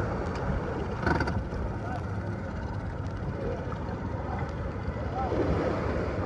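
Steady, muffled low rumble of a motorboat's engine and wind, picked up by a phone held against clothing, with faint voices in it.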